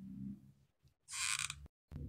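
Faint mechanical creak of a hot glue gun's trigger being squeezed to feed glue onto the flower's centre, short and low near the start, followed by a brief soft hiss about a second in.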